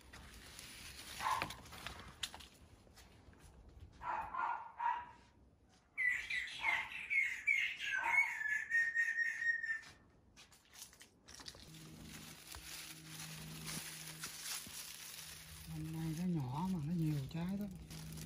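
Songbird singing: a few short warbling calls in the first five seconds, then a quick run of chirps about six seconds in that runs into a trill and stops about ten seconds in.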